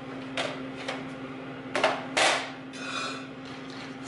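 Wooden spoon knocking and scraping against a glass mixing bowl while stirring walnuts into thick banana cake batter: a few sharp knocks, the loudest a little past two seconds in, then a short scrape.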